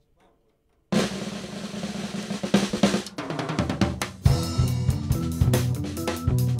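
A band kicks into a live instrumental about a second in, led by the drum kit with fast snare and cymbal hits. Heavier low notes come in strongly after about four seconds.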